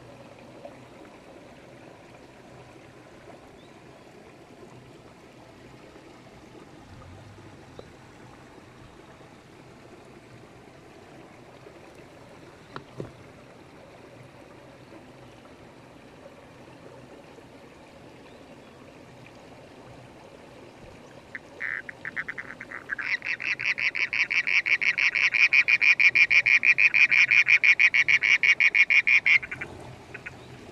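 A frog calling: a fast, evenly pulsed trill that starts with a few short stutters, then swells and holds for about six seconds before stopping abruptly. Before it there is only the steady low trickle of shallow stream water.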